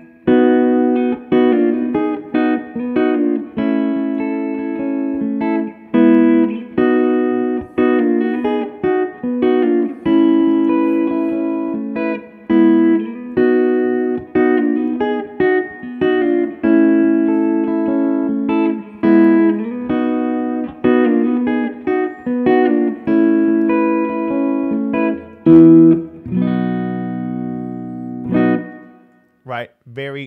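Electric guitar (PRS) playing a Mixolydian I–flat VII–IV chord progression: a run of struck chords and short note fills. A loud chord about 25 seconds in is followed by lower notes ringing out and fading just before the end.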